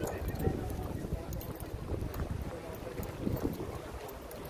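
Wind buffeting the microphone in a steady low rumble, with the voices of passers-by in the background.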